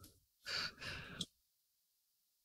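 A person's breathy exhale, like a sigh, in two short puffs starting about half a second in and lasting under a second.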